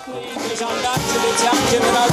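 Military brass band playing a march, with horns and percussion, getting louder over the first second.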